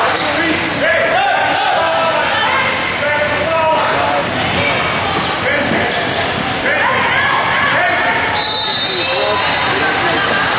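Basketball game in a gym: a ball bouncing on the hardwood and players' and spectators' voices shouting and calling in the echoing hall. Near the end a short, high referee's whistle sounds, stopping play for free throws.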